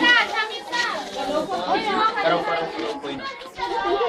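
A group of people chattering over one another, with a laugh right at the start and several voices, some high-pitched, overlapping.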